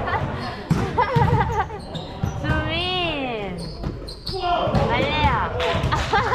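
Indistinct voices calling out on an indoor volleyball court, with volleyballs thudding and bouncing on the gym floor several times. One long falling call comes near the middle.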